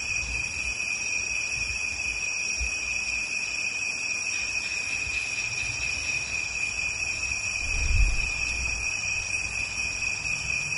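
Steady high-pitched whine over a constant hiss, with a faint low rumble that swells briefly about eight seconds in.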